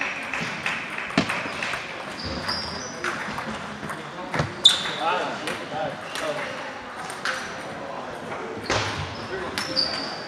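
Table tennis balls clicking irregularly off tables and paddles at many tables around a large hall, over background chatter, with a few short high squeaks.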